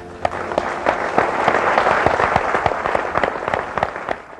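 Theatre audience applauding at the end of a song: dense clapping that breaks out suddenly as the music stops, swells, and begins to thin out near the end.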